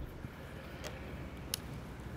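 A travel trailer's toy-hauler ramp door being walked down by hand: a faint low background rumble with two light clicks, the first a little under a second in and the second about half a second later.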